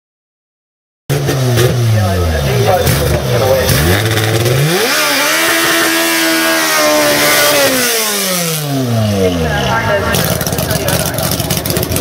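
Honda CR-X's swapped K-series four-cylinder engine, revved in short rising and falling blips, then held at high revs for about three seconds in a burnout before the revs drop away. The engine then runs rough and crackly. The sound cuts in about a second in, after silence.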